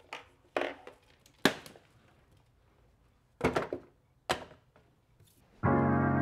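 About five separate short knocks and thuds, spread over the first four and a half seconds with quiet between them. Sustained keyboard chords of background music start near the end.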